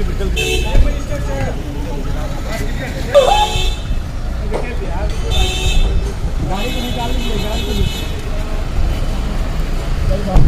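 Car horns honking among a line of vehicles: four honks, the last and longest lasting about a second and a half, over a steady low rumble of traffic.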